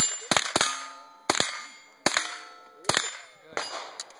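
Rapid gunshots fired at steel plate targets, about six shots in the first three seconds at an uneven pace, with the steel ringing after hits. This is a timed steel-shooting run that finishes in about four seconds.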